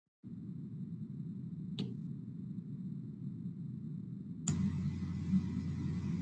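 Faint low rumble of background noise through an online call's open microphone. There is a single click about two seconds in, and a stretch of hiss begins near the end, as another participant's microphone opens.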